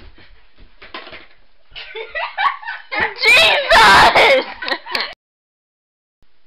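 People's voices, rising to a very loud vocal outburst around three to five seconds in, then cutting off suddenly into silence.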